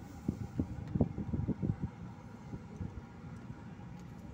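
Low rumble inside a slowly moving car, with a run of irregular low thumps in the first two seconds that then settle into a steadier, quieter rumble.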